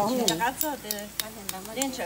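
Sharp, scattered clicks of metal spoons knocking against snail shells as snails are pried out of their shells by hand, with voices talking throughout.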